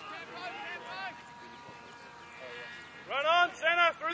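Voices shouting on an open sports field: faint calls in the first second, then two loud, drawn-out, high-pitched shouts in the last second.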